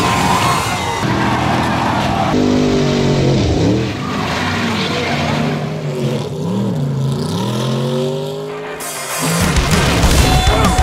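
Racing car engines revving, climbing and dropping in pitch several times, with tyres skidding.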